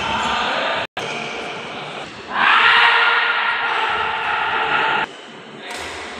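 Badminton doubles rally in an echoing indoor hall: rackets hitting the shuttlecock and shoes on the court floor. The sound cuts out briefly just under a second in, and a louder, steady stretch of held tones runs from about two seconds to five seconds.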